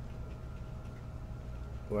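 Steady low background hum with a faint constant tone above it, unchanging throughout; a man's voice starts right at the end.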